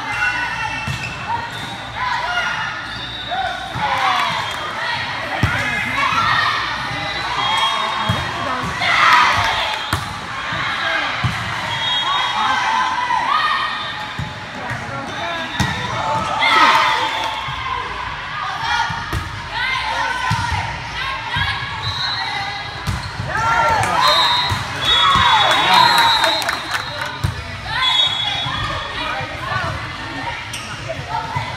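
Volleyballs being struck and thudding on a hard court floor in a large echoing sports hall, with players and spectators calling and shouting throughout, loudest in a few bursts.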